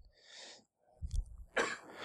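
A man's faint breath and throat noises at a microphone: a soft breathy sound near the start, a few low bumps about a second in, then a louder breath or soft cough just before he speaks again.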